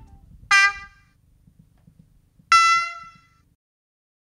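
Low-tone diesel locomotive horn sound of a BR 216 played by a PIKO sound decoder through the N-scale model's small built-in loudspeaker: two short blasts, the second a little higher-pitched and longer.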